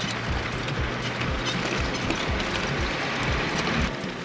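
Toyota Land Cruiser HDJ80 driving a rough dirt track, heard from inside the cab: steady road noise with irregular low bumps and rattles as it goes over the ruts, under background music.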